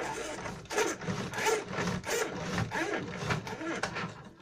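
A window roller shutter being lowered, its slats running down in one continuous rough noise that stops near the end.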